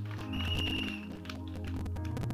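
Soft background music of sustained low notes and held chords under the pause in the sermon, with a thin high note held briefly near the start.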